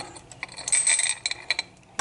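A few light clicks and a brief ringing clink of small hard objects being handled on a counter, the clink about a second in.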